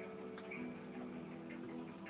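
Background music from a television programme between lines of dialogue: held notes that step down in pitch about halfway through, with a light ticking.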